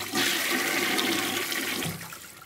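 Toilet flush sound effect: a rush of water that starts just after the beginning, holds steady and fades out near the end.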